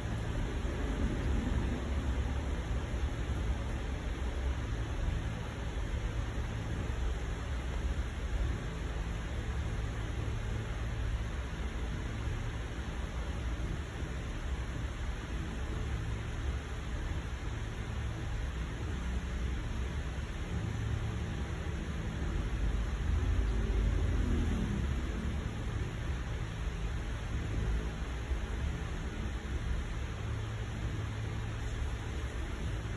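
Steady background noise: a low rumble with a faint hiss, swelling a little about three-quarters of the way through.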